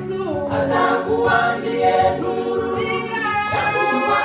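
Women's church choir singing a Swahili gospel song together in several voices.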